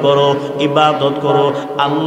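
A man's voice chanting the sermon in a drawn-out, melodic intonation, holding and sliding notes rather than speaking plainly.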